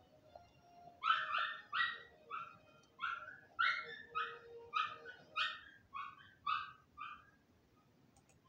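A dog barking in a quick series of short, high-pitched yaps, about two a second, starting about a second in and stopping near the end, over faint music from a computer's speakers.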